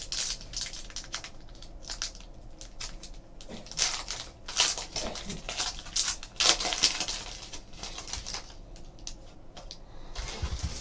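A trading-card pack being torn open and its cards handled: irregular crinkling, tearing and rustling, loudest about four seconds in and again around six and a half seconds.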